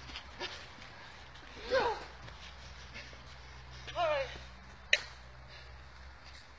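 Two short, wordless vocal cries, each falling in pitch, about two seconds apart, from men acting out a mock fight. A single sharp click follows a second later.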